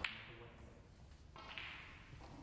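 Snooker cue tip striking the cue ball: a sharp click right at the start that dies away. A faint hiss follows about one and a half seconds in.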